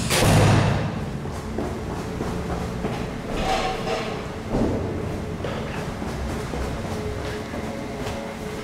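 A heavy stairwell door shuts with a loud thud, echoing in the concrete stairwell. A group then moves down the stairs and along a corridor, with a couple of softer knocks and rustles a few seconds later.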